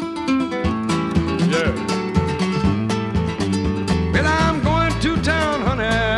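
Country recording in an instrumental gap: a busy fingerpicked guitar part of many quick notes over a bass line, with sliding, wavering high notes over it in the last two seconds.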